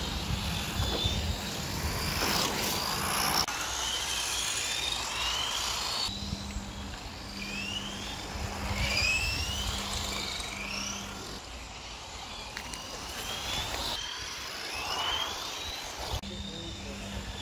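Electric motors of 1/10 scale Tamiya 4WD RC cars whining, the pitch rising again and again as the cars accelerate past, over a low rumble.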